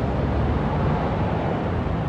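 A steady rushing noise with a low rumble underneath, like wind or surf.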